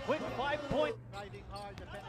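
Basketball game broadcast sound: a voice for about the first second, then a basketball dribbling on a hardwood court as short sharp bounces over arena background noise.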